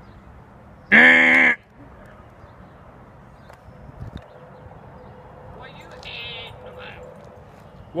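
One loud, flat-pitched cry about a second in, lasting about half a second, followed near the middle by a fainter, higher call.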